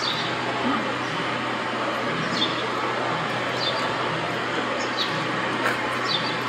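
Steady outdoor city background noise, a constant hum of distant traffic, with a few short high chirps about two, three and a half, and five seconds in.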